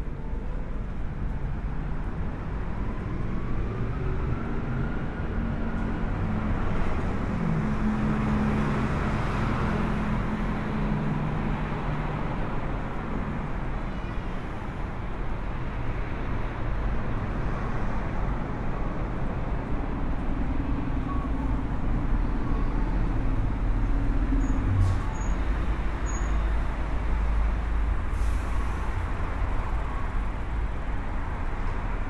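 Urban road traffic: a steady rumble of passing cars and buses, with engine hum that swells and fades a couple of times and a faint rising whine early on.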